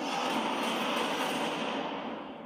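Action-film trailer soundtrack played through cinema speakers: a dense, steady wash of effects and music that begins to fade near the end.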